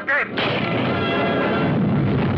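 Film sound effect of a blast on the water, starting suddenly about a third of a second in, followed by a continuous loud rumble of explosions and fire.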